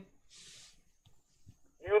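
A quiet pause in a conversation on a call-in line. A brief soft hiss comes about half a second in, then a man starts speaking near the end.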